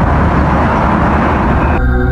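Explosion at a thermal power plant hit in an air strike, recorded on a phone: the loud, steady rumble that follows the blast. Music cuts in near the end.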